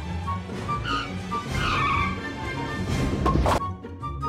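Animated film soundtrack: music under a cartoon sound effect, a sliding, swishing noise in the middle, then a crash near the end as a group of men is knocked over.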